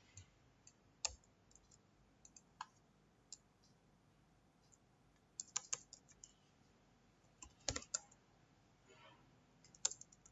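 Faint computer keyboard keystrokes and clicks, scattered singly and in short quick clusters with pauses between.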